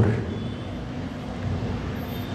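Steady background noise with a faint low hum in a pause between a man's spoken phrases; the last of his voice fades out at the very start.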